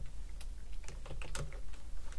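Typing on a computer keyboard: a short, irregular run of key clicks as a word is typed.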